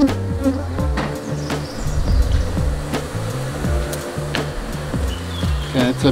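African honeybees (Apis mellifera scutellata) buzzing around an open hive, over background music with a low bass line that steps from note to note.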